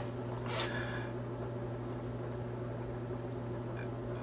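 Low, steady background hum, with a short breath-like hiss about half a second in.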